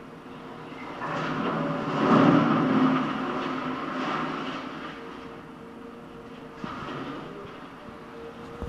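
Excavator demolishing a building: its diesel engine runs under the grinding and clatter of rubble and scrap metal being torn and dropped. The noise swells loudest about two to three seconds in.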